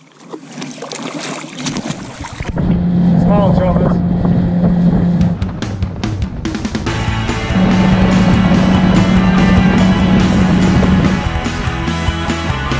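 A boat's motor running with a steady low hum that drops out for a couple of seconds midway, with music coming in over it about seven seconds in.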